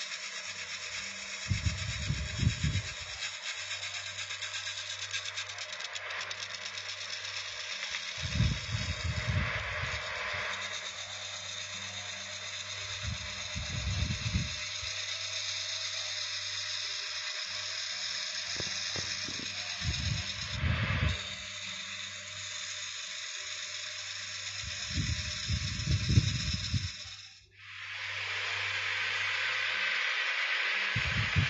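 Electric wood lathe running with a steady hum as a wooden drum shell is turned, a steady hiss of the tool cutting the spinning wood, and low rumbles every few seconds. The sound drops out briefly near the end, then the hiss goes on.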